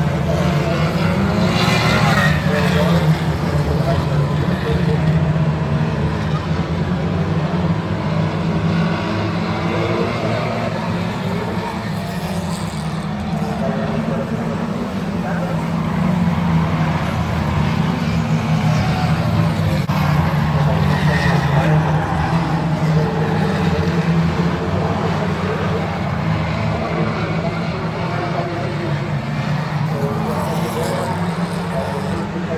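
A pack of Lightning Rods race cars lapping the oval together, their engines blending into a steady low drone that rises and falls a little as they pass, with voices over it.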